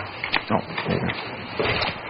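Rustling and handling noise, uneven with scattered small clicks, and a short 'oh'.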